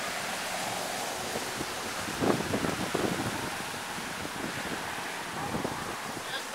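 Wind rushing over the microphone, with stronger buffeting gusts a little over two seconds in.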